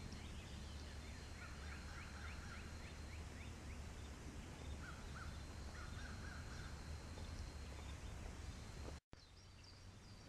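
Faint outdoor ambience with a steady low rumble, over which a distant bird gives a quick run of rapid chirping notes about one and a half seconds in and shorter calls around five to six seconds. A thin steady high tone sits under it and stops near the end.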